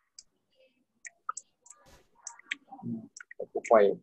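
A computer mouse clicking: about eight short, sharp clicks, spaced unevenly over the first two and a half seconds, as a text box is selected and dragged in a word processor.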